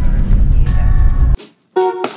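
Road rumble inside a moving van, heavy and low, cuts off suddenly about two-thirds of the way in. After a brief gap, a short staccato chord from keyboard-like background music hits near the end.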